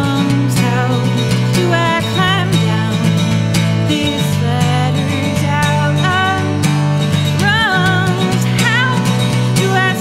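A woman sings a melody with vibrato over a strummed Taylor acoustic guitar, in a solo live singer-songwriter performance.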